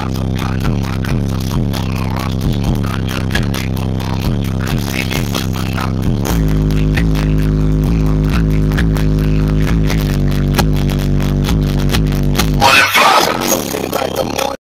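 Bass-heavy electronic music played loud through a car audio system with two Rockville Punisher 15-inch subwoofers, heard inside the cabin. About six seconds in a deeper, sustained bass note comes in under the track and cuts off about a second before the end.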